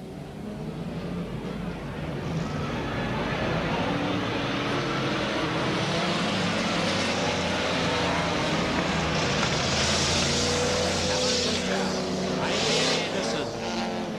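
A pack of speedway saloon cars racing on a dirt oval, several engines running hard at once. The sound builds over the first couple of seconds and is loudest about ten seconds in, as the field passes close.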